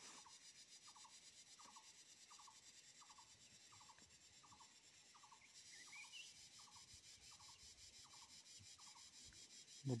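Near silence: a pen writing faintly on paper. A faint short squeak repeats evenly, about every 0.7 s.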